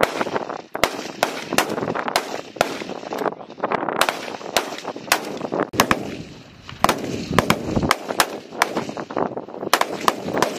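Several M4 carbines firing on a firing line: sharp single shots, about two to three a second, overlapping irregularly between shooters, with a brief lull about six seconds in.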